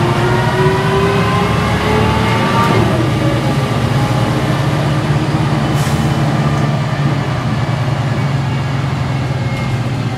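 Volvo B10M bus diesel engine heard from inside the cabin, pulling under acceleration with a rising note. About three seconds in the rising note breaks off, and the engine runs on steadily with a low drone and road noise. Near the end the note starts to climb again.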